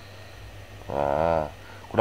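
A person's drawn-out hesitation sound, a single voiced "ehh" lasting about half a second midway, over a steady low hum.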